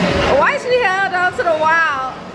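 A high-pitched voice making drawn-out wordless exclamations that glide up and down in pitch, starting about half a second in.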